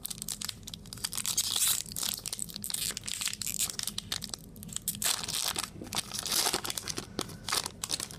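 Foil booster-pack wrapper of a Magic: The Gathering card pack being torn open and crinkled by hand, in a run of crackly bursts, loudest about two seconds in and again around six seconds in.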